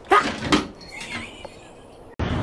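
A domestic cat gives two short, loud cries in quick succession, then fainter ones, as it is grabbed out of the toilet bowl.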